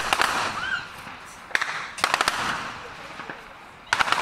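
Gunshots echoing down a street: a shot at the start, another about a second and a half in, a quick burst of about four just after, and one more near the end, with voices in the background.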